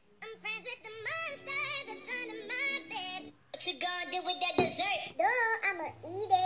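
Song audio from musical.ly clips playing through an iPad's speaker: a singing voice over backing music. It breaks off briefly just past halfway as the next clip starts.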